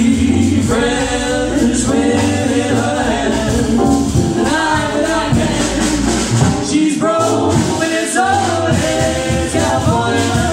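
Live jazz combo playing: a woman singing over keyboard and drum kit.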